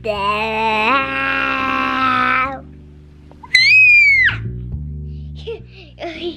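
A young boy making silly noises right at the microphone: a drawn-out, wavering 'aaah' for about two and a half seconds, then a brief, very high-pitched squeal that falls away, over background music.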